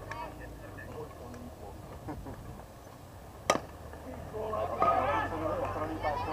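A slowpitch softball bat hitting the ball: one sharp crack about halfway through, followed by voices calling out.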